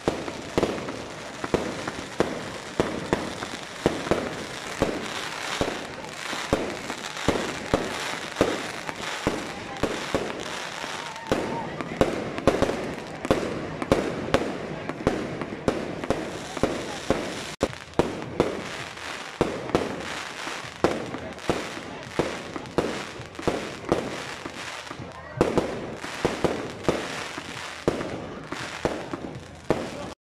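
Fireworks going off overhead: skyrockets bursting in a fast, irregular run of sharp bangs, several each second, with crowd voices beneath.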